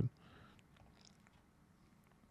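Very quiet, faint room tone with a low rumble, with no distinct sound event.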